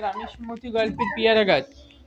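A rooster crowing, its call sliding down in pitch as it ends about a second and a half in.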